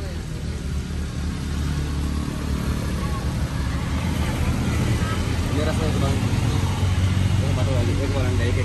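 A motor vehicle's engine running steadily, a low hum, with people talking quietly over it from about five seconds in.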